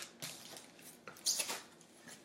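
Cardboard shipping case being handled and turned over, with scattered scraping and rustling and a louder scrape a little past halfway.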